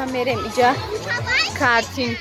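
Crowd of high children's voices calling and chattering over one another, with music playing underneath.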